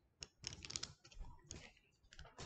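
Handling noise close to a laptop's microphone: a few irregular soft clicks and knocks.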